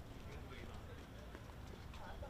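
Faint outdoor ambience: distant voices murmuring over a low steady rumble, with a few light taps.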